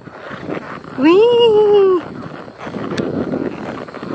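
A rider's voice calling a long, drawn-out "weee" for about a second, rising then slowly falling in pitch, over steady outdoor background noise.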